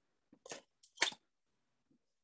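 Paper being handled on a countertop: two short, faint rustles, about half a second and a second in.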